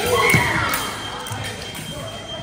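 A brief raised voice near the start, over the echoing hubbub of a large gym hall, with scattered low thuds. A faint steady high-pitched tone runs underneath.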